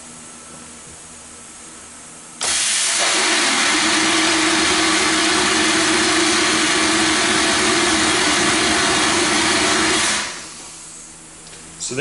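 VH800P wet blasting machine's blast nozzle firing: compressed air rushes through the 10 mm nozzle in a loud, steady hiss with a low hum under it. It starts abruptly about two and a half seconds in and dies away about ten seconds in. The blasting draws about 20 CFM at 50 to 60 psi working pressure.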